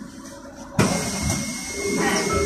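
Cabin noise of a Sinara 6254.00 trolleybus in motion: a low rumble that rises suddenly, about a second in, to a loud rushing noise with a steady high whine.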